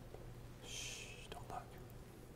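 A man's faint whispering or muttering: a short hiss about half a second in, then a couple of soft fragments, over a steady low hum.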